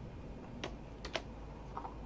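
A few sharp computer keyboard and mouse clicks: one just over half a second in, then two in quick succession about a second in, over a faint low steady hum.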